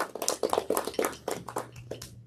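Indistinct speech from a person talking away from the microphone, the words unclear.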